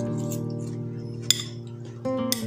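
Background acoustic guitar music: a strummed chord rings and slowly fades. About a second in there is a single sharp clink of cutlery against a dish.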